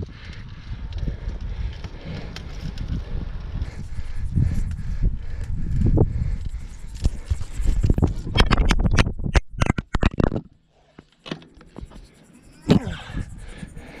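Wind rumbling over an action camera's microphone on a bicycle climb, with the rider's heavy breathing. A run of sharp knocks and scrapes as the camera is handled comes about eight to ten seconds in, followed by a brief quieter spell.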